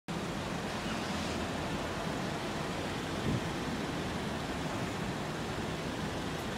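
Steady noise of street traffic from cars queued and moving slowly through an intersection, an even hiss and low rumble that swells briefly about three seconds in.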